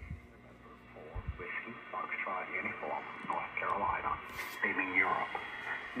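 Indistinct talking with a thin, narrow sound, over a faint steady hum; two low thumps come in the first second or so.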